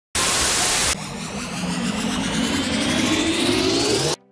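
Intro sound effects: a loud burst of static hiss lasting just under a second, then a synthetic riser sweeping steadily upward in pitch for about three seconds, building to the logo reveal.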